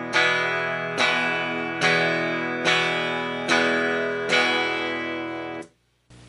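Fender American Telecaster on the bridge pickup, played clean through an amplifier with its volume knob at about two-thirds: the same chord strummed six times, about one strum every 0.85 s, each left to ring and fade. The sound cuts off suddenly near the end.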